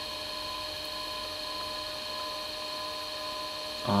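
Electric pottery wheel running at a steady speed: a constant electrical hum with a thin high whine and a few fixed tones, no change in pitch or level.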